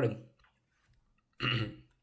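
A man clears his throat once, briefly, about a second and a half in.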